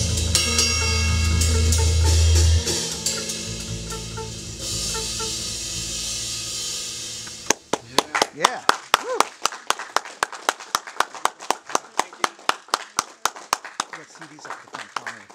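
A jazz trio of upright double bass, archtop electric guitar and drum kit with cymbals plays the final chord of a tune, a held low bass note stopping a few seconds in and the rest ringing down. The music cuts off a little past halfway, and a small audience claps, a few people's sharp claps several a second.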